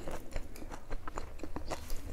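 A person chewing a mouthful of rice and curry with the mouth open to the microphone, making a quick run of wet clicks and smacks.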